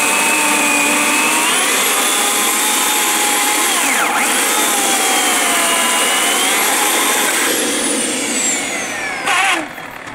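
Bosch AKE 40 S electric chainsaw cutting through a dry black locust log, its motor whine sagging and recovering in pitch as the chain loads up in the very hard wood. About seven and a half seconds in, the motor winds down with a falling whine, and a brief loud burst of noise comes shortly before the end.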